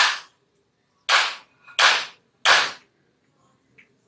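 Chalk writing on a chalkboard: four quick strokes, each starting sharply and scraping off within a fraction of a second.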